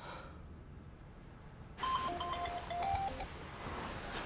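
Mobile phone ringtone: a short electronic melody of clear beeping notes at a few different pitches, lasting about a second and a half.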